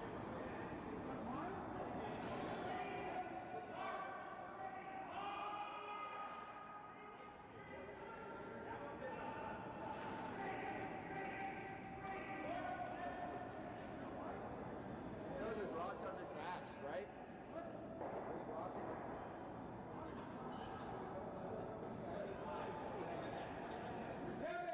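Faint curling-rink ambience: distant players' voices in the hall, with a few sharp knocks around the middle.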